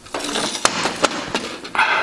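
Handling noises as a square tube is fitted up against a car's rocker panel: several sharp clicks and knocks, then a short scrape near the end.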